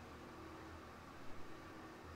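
Faint room tone with a steady low hum, and a couple of small, faint knocks about a second and a half in.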